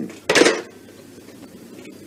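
A brief clatter of hard objects about half a second in, then quiet room tone.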